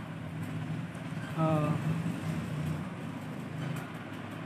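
A steady low hum of background noise, with a short hummed voice sound about a second and a half in.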